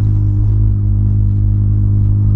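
Volkswagen Polo sedan's four-cylinder engine and exhaust droning at a steady low pitch, heard from inside the cabin while cruising at a constant speed.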